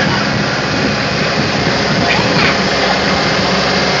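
A vehicle engine running steadily with a low hum under a constant rushing noise, as from the tow vehicle pulling the ride carriage.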